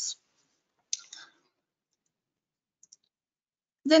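A single sharp click about a second in, followed by a faint softer sound and a tiny tick near three seconds, in an otherwise silent pause between spoken words.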